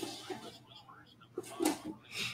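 Quiet, indistinct speech.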